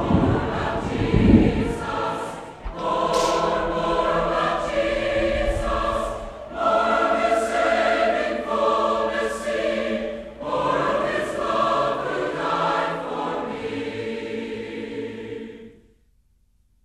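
A choir singing the theme in long phrases with short breaks between them, over a low rumble at the start, fading out near the end.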